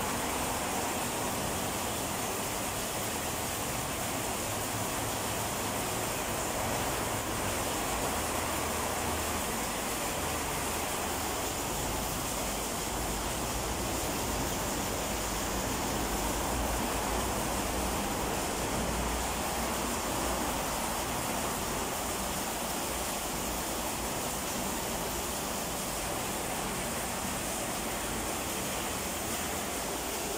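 Steady rush of water pouring into a concrete sump pit as it is filled for a wet test of its submersible pumps.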